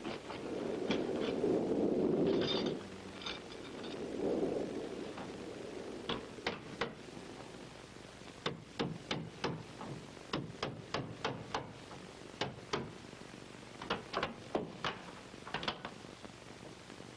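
Wood being handled: a scraping, tumbling rumble in the first few seconds, then a long run of sharp, irregular wooden knocks and clicks, as of firewood being lifted out and set down.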